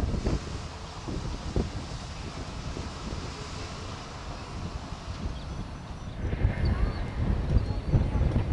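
Wind rumbling on the microphone, growing gustier in the last couple of seconds, with a pickup truck driving across the railroad grade crossing.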